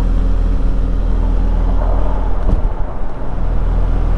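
Bobcat E35 mini excavator's diesel engine running under load as the machine tracks forward up onto a trailer deck, with a brief knock about two and a half seconds in.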